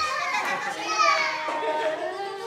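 Young children's voices chattering and calling out, high-pitched and indistinct, with no clear words.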